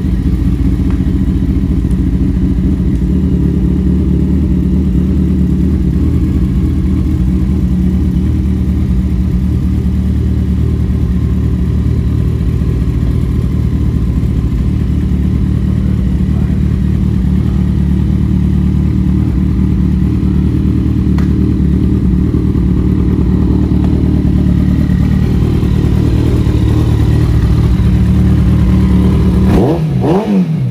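2013 Kawasaki ZX-14R's 1441 cc inline-four idling steadily through an aftermarket exhaust, growing slightly louder near the end.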